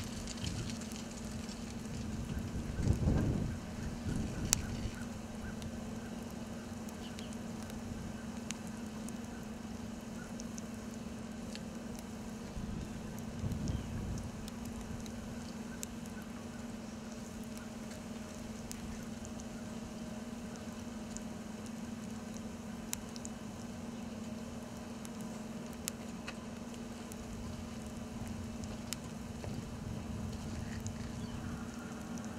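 Food sizzling on a small grill's grate and in a cast-iron skillet, with scattered crackles and pops over a steady low hum. Two brief low rumbles come about three and fourteen seconds in.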